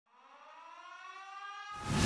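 A siren-like tone that fades in from silence, growing louder as its pitch slowly rises. Near the end a rush of noise swells up.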